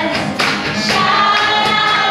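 Live worship music: a gospel song sung by a worship team of two women and a man on microphones, with guitar accompaniment.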